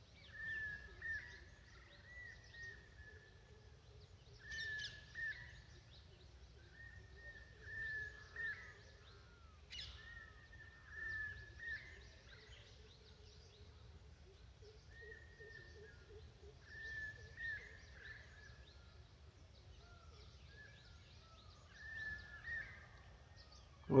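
Faint background bird calls: short chirping notes repeated in small clusters every second or two, with a couple of sharp clicks in between.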